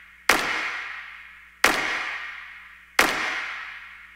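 Trailer sound-design impact hits: three sharp bangs about 1.3 seconds apart, each ringing out and fading slowly.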